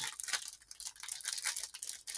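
A stack of Panini Prizm football trading cards being flipped through and squared in the hands: dry rustling of card stock with quick light clicks.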